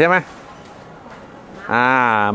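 Man's voice: a short word, a pause with only faint background, then a long drawn-out syllable held on one pitch near the end.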